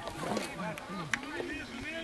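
Distant men's voices calling and talking out on an open football pitch, several overlapping, with a few short sharp clicks among them.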